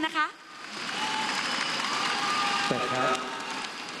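Studio audience applauding and cheering, with a few held shouts from the crowd over the clapping.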